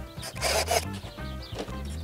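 Background music with steady low tones, and a brief scrape of wood rubbing on wood about half a second in.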